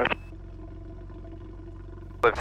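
Steady low drone of a Cessna 172's engine heard inside the cabin, even and unchanging.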